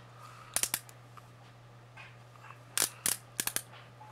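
Small sharp plastic clicks in two quick clusters, about three half a second in and about five near the end: the twist-up mechanism of a highlighter pen being turned to push product out, over a steady low electrical hum.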